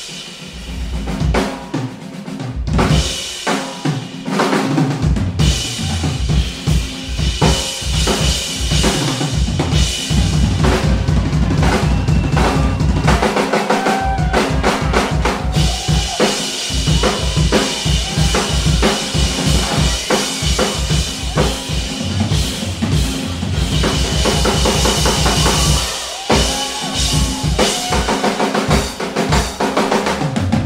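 Drum kit solo: rapid bass-drum and tom strokes under snare hits and crashing cymbals, growing dense and loud from about six seconds in, with short breaks in the bass drum about halfway and near the end.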